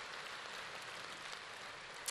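Soft, steady applause from a large audience.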